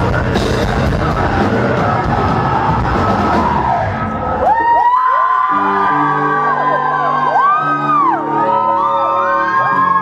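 Live heavy metal band playing with distorted guitars, drums and vocals. About halfway through, the heavy part cuts out into a sparse passage of held clean notes under several high, gliding tones that rise and fall in pitch.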